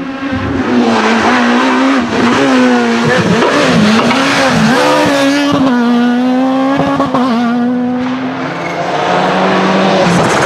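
Rally car engine driven hard on a tarmac stage, its note held high and dipping and climbing again several times with gear changes and throttle lifts, then falling away near the end.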